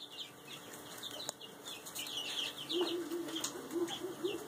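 Young chickens peeping: many quick, high peeps, each sliding downward, overlapping throughout. From about three-quarters of the way in, short lower calls join them.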